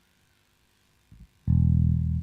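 A near-silent pause, then about one and a half seconds in a live band's bass guitar comes in with a loud, low, held note, starting the next song.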